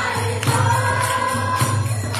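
Kirtan: a roomful of people singing a devotional chant together. Hand claps and jingling metal percussion keep a steady beat of about two strokes a second.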